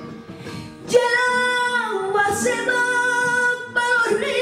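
A woman singing flamenco cante. About a second in she launches into a long held note that bends downward through an ornamented passage in the middle. It breaks off near the end and she starts a new phrase, with flamenco guitar accompaniment underneath.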